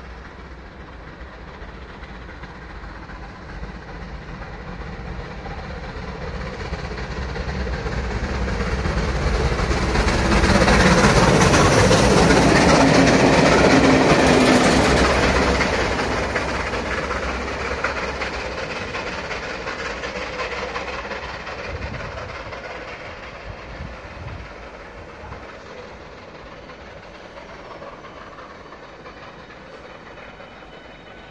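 Steam-hauled passenger train passing through a station. It grows louder as it approaches, is loudest about a third of the way in, then fades away as the carriages and a diesel locomotive on the rear go by.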